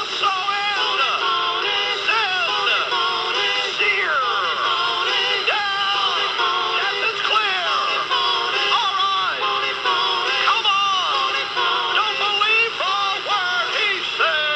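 A comic parody song: a man singing over a musical backing, on a radio broadcast recording.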